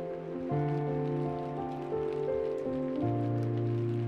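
Background film score of slow, sustained chords. A new, lower bass note enters about half a second in and steps down again about three seconds in.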